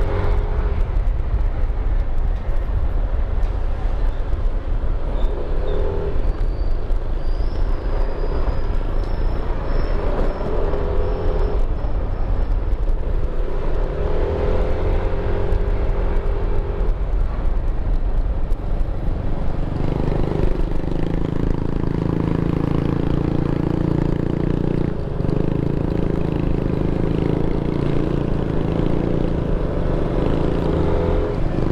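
Motorcycle engine running while riding at low speed, with wind rumbling on the microphone. The engine note rises and falls several times in the first part, then holds steadier from about two-thirds in.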